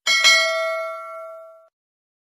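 A bell-ding sound effect for the notification bell: two quick strikes, then a ringing chime that fades out after about a second and a half.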